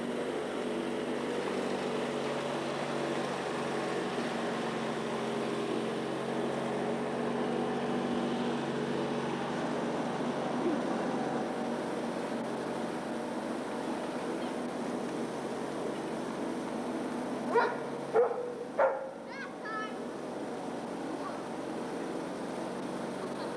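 A dog barks three times in quick succession, short sharp barks, over a steady background hum.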